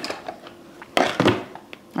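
A few light knocks and clicks, the loudest about a second in, as a small plastic skincare bottle is handled and lifted out of a gift box lined with shredded paper.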